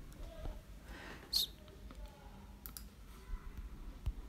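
A few faint, sharp clicks of a computer mouse, the loudest about a second and a half in, over a low steady hum.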